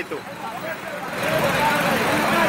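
Street noise from traffic, with faint voices: a broad rush that grows louder about a second in.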